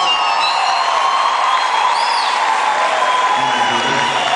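Live music on stage with a long held note, over a cheering crowd.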